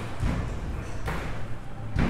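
Arcade claw machine in play amid room noise: a steady low hum with two sharp knocks, one about a second in and one at the end.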